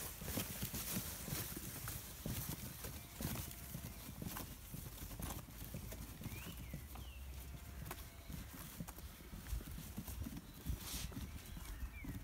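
Light footsteps on a dirt footpath, roughly one a second and irregular, over a low wind rumble on the microphone; a bird chirps briefly about six seconds in.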